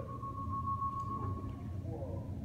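A single steady high-pitched tone held for almost two seconds, over a low hum, from in-car video of a Tesla on autopilot played through a hall's speakers.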